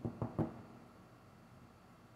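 A short run of computer keyboard key taps, stopping about half a second in.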